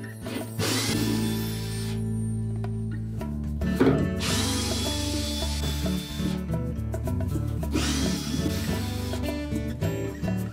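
Cordless drill-driver running in three short spells, backing out the Phillips retaining screws that hold a washing machine's plastic drive hub to the inner basket. Each spell starts with a rising whine as the motor speeds up.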